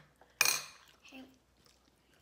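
A metal spoon strikes ceramic tableware once with a sharp clink, ringing briefly, about half a second in.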